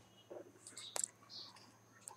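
A quiet pause holding one faint, sharp mouse click about a second in, as the Page Layout tab is clicked. A few faint breaths near the microphone sound around it.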